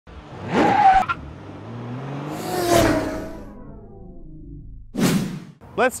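Intro sting of whooshing sound effects: a short swish about half a second in, a longer whoosh that swells and dies away with fading pitched tones, then a brief swish about five seconds in.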